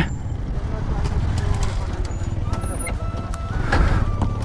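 Motorcycle riding along at a steady pace: low engine and wind rumble, with faint voices in the background.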